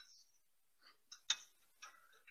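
Faint, scattered light clicks and knocks from hands working on the test setup, with one sharper clack a little past the middle, as the test leads are shifted to the next phase.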